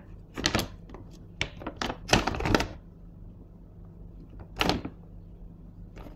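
Crackling clicks and rustles of a clear plastic zip-lock bag being handled as pieces of peeled cassava are put into it. The sounds come in three short clusters: about half a second in, from about one and a half to nearly three seconds in, and once more near five seconds.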